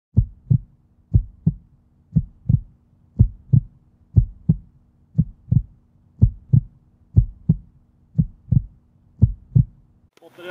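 Heartbeat sound effect: ten low double thumps, about one a second, over a faint steady hum.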